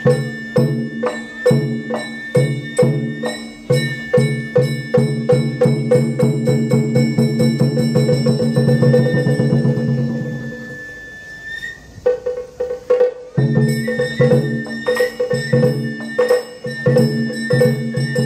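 Itako bayashi festival music played on a float: rapid taiko drumming and a hand gong under a held bamboo-flute melody. The drumming drops away about ten seconds in, leaving the flute, and comes back in full about three seconds later.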